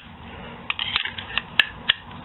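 Hunting knife blade sliding against a homemade PVC pipe sheath as it is drawn, giving a short run of plastic scrapes and clicks, with two sharp clicks near the end.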